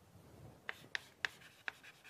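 Chalk writing on a blackboard: a series of sharp taps and short scrapes as the strokes of letters are made, starting about two-thirds of a second in.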